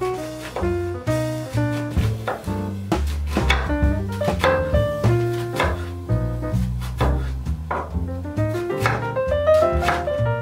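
Jazz background music with piano and a stepping double bass line, over repeated knife strokes on a wooden cutting board as an onion is diced.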